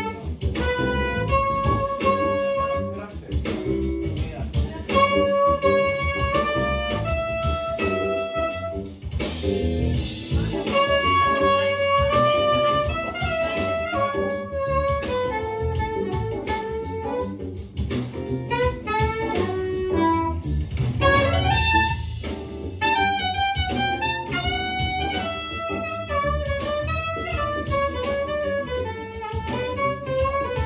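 Live jazz: a saxophone plays a melody of held and moving notes over guitar accompaniment. It is recorded on a phone lying on a table, so the sound is somewhat distant and roomy.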